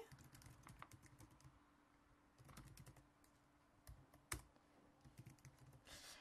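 Faint typing on a computer keyboard: clusters of light keystrokes, with one sharper click about four seconds in.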